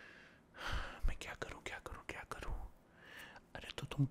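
A man whispering close to the microphone, with breathy puffs and small mouth clicks between the whispered words.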